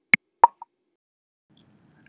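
The last notes of an electronic intro jingle: two short, sharp blips about a third of a second apart, the second with a faint echo.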